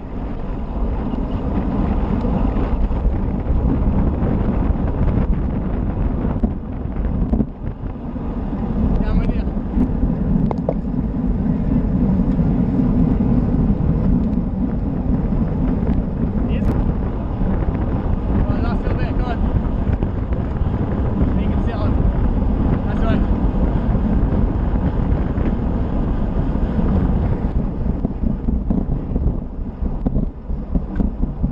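Wind buffeting an action camera's microphone on a road bike at about 25–30 mph, a steady low rush mixed with tyre and road rumble, easing briefly about seven seconds in.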